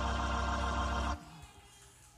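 A held keyboard chord with a deep bass note, cutting off suddenly about a second in, then quiet.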